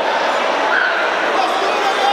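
Steady crowd noise echoing in a large sports hall: many voices talking and calling out at once, with a brief high shout a little under a second in.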